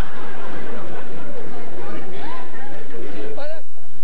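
Studio audience laughing together, a dense mass of many voices, with a man's hearty laughter among them.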